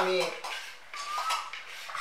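Light clicks and clatter of coconut-shell bowls and thin sticks being handled on a tiled floor.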